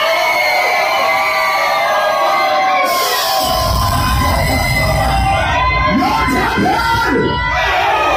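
Club crowd at a live dancehall show, shouting and cheering with many voices overlapping. A low rumble comes in about three and a half seconds in and stays under the voices.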